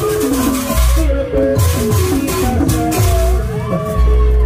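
Live Sundanese bajidoran (jaipong) music: kendang drums playing strokes with deep low hits under a sliding, wavering melodic line.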